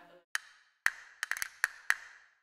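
A run of about eight sharp wood-block knocks in an uneven rhythm, sparse at first and bunched together in the second half, used as a percussion transition effect.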